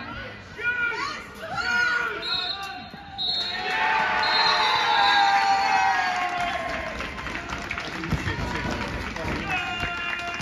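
Spectators and players at a football match shouting, then a crowd breaking into loud cheering and shouting about three seconds in, which slowly eases off.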